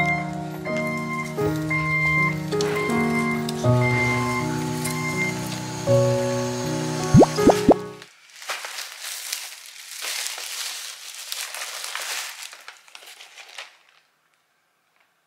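Background music with a plucked melody, ending about eight seconds in with a few quick rising slides; then a thin plastic shopping bag crinkling and rustling as items are pulled out of it.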